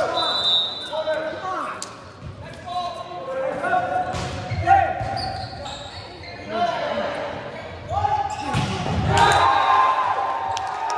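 Volleyball rally in a large, echoing gym: the ball struck several times with sharp smacks, sneakers squeaking on the wooden floor, and players shouting calls. The loudest hits come near the end.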